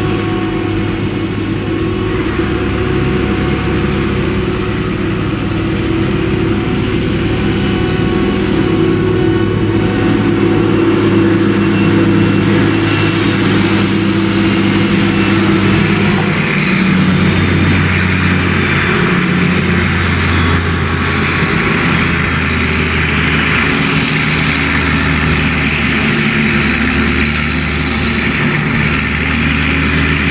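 Claas Jaguar 970 self-propelled forage harvester chopping maize, its engine and chopper running steadily under load, with the tractor that pulls the trailer alongside running with it. Past the halfway mark a low throb swells and fades about every two seconds.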